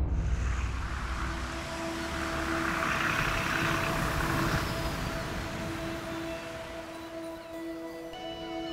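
Sea waves washing, a surge of surf swelling about two seconds in and dying away by about five seconds, over soft background music holding long steady notes.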